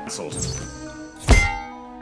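Film soundtrack with sustained background music, a brief voice at the start, and one loud thud a little past the middle.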